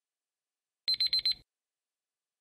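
Countdown timer's electronic alarm: four quick, high beeps in about half a second, signalling that the time is up.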